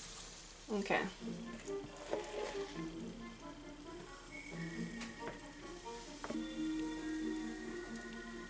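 Soft background music, with a few light clicks and taps from a utensil as waffle batter is scooped out of a plastic bowl.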